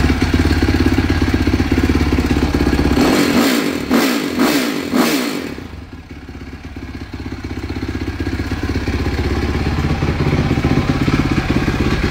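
Sport ATV engine running, blipped up and down several times between about three and five and a half seconds in, then dropping back and running steadily.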